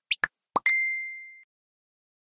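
Electronic logo sting: a few quick sweeping blips and a pop, then a single ding that rings and fades out within about a second.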